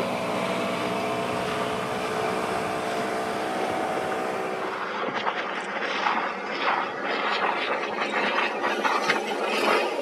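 Boat outboard engine running steadily at speed over rushing water. About halfway through, the engine drone fades and irregular splashes of water against the hull take over.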